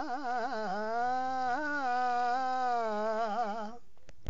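A solo voice sings a long wordless melodic passage: quick wavering ornaments in the first second, then smoother sustained notes, breaking off shortly before the end.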